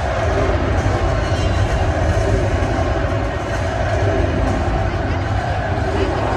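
Arena sound system playing the bass-heavy soundtrack of the lineup-intro video, picked up as a loud, steady, booming rumble with no clear breaks.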